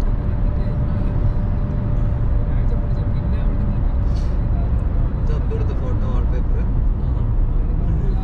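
Steady low rumble of tyre and engine noise heard inside a car cabin at highway speed, with a faint hum that fades about halfway.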